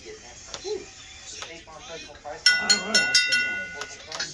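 Glasses clinking together, a quick run of about five strikes in under a second, each leaving a high ringing tone that hangs on. Low voices are heard under it.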